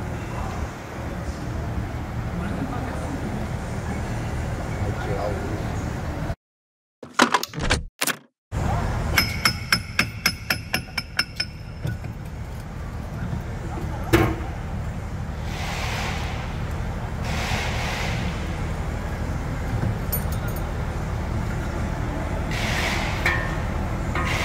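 Hand tools working on the bolts of a Renault Duster's rear-differential electromagnetic coupling: a quick, even run of about a dozen ratcheting clicks, then a single sharp metallic clink, over a steady workshop hum.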